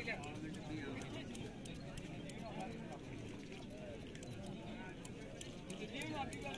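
Faint voices of people talking, with light, irregular snipping clicks from scissors cutting a camel's hair.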